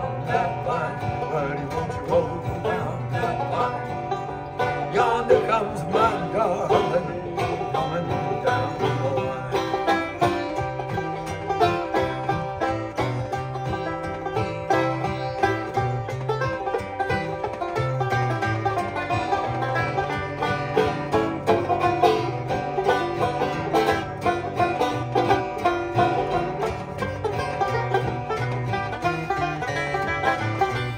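Banjo and acoustic guitar playing an instrumental break of a folk song, the banjo picking a busy melody over the guitar's chords and bass notes.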